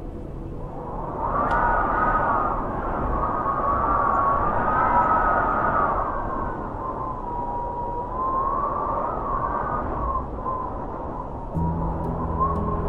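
Wind gusting, with a wavering whistling howl that rises and falls in pitch and swells in loudness through the middle. A low sustained ambient music drone comes back in near the end.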